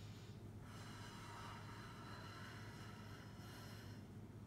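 A person breathing out through the mouth for a couple of seconds, starting about a second in, over a faint steady low room hum.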